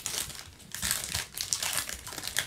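Crinkling of trading-card pack wrappers and packaging handled by gloved hands, a quick run of irregular rustles.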